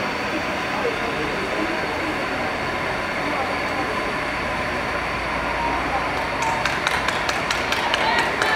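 Murmur of voices over a steady background rush, then from about six and a half seconds in, quick rhythmic hand clapping by trackside spectators, about four claps a second, urging on a passing track cyclist.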